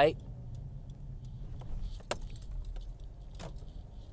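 Car cabin noise while driving: a steady low road rumble, with a couple of sharp light clicks or rattles, one about two seconds in and another about three and a half seconds in.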